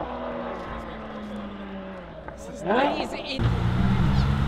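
A car's engine note fading and dropping in pitch as it drives away. About three and a half seconds in, a deeper, steady engine rumble sets in abruptly: a red Porsche 911's flat-six engine as the car rolls slowly up.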